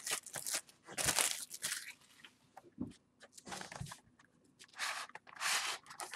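Clear plastic shrink-wrap being torn and crinkled off a cardboard trading-card box, in several short rustling bursts with quiet pauses between.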